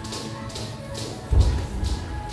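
Boxers sparring in gloves on a ring canvas: light taps and shoe scuffs, then one heavy padded thud a little over a second in, over music playing in the gym.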